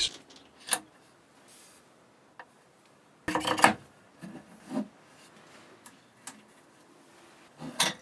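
Light clicks and knocks of a Delrin roll nut and a metal tickler lever being fitted onto upright metal spindles on a wooden board, the loudest cluster of knocks a little past three seconds in and a few smaller clicks scattered after it.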